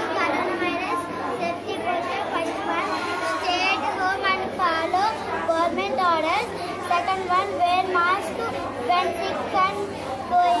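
Only speech: a young girl's voice talking, with other children's voices overlapping at times.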